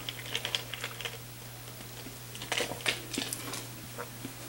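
Faint clicks and small knocks of a person taking a sip of water, handling the drink and sipping, with a cluster of clicks about two and a half to three and a half seconds in.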